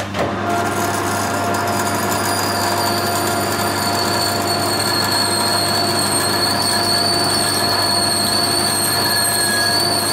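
Metal lathe engaging with a sharp knock, then running steadily with a high gear whine while a die in a die holder cuts a thread on a brass part.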